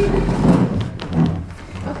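A low thud and shuffle as a chair is pulled and sat on on a stage floor, loudest about half a second in, with voices and laughter around it.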